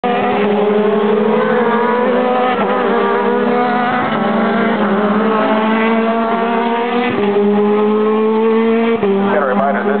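Mazda-powered Atlantic Championship open-wheel race car engine (Mazda-Cosworth four-cylinder) running at high revs as the car comes down the Corkscrew. Its loud, steady note slides gradually lower, with abrupt pitch changes a little after seven seconds and again at nine seconds.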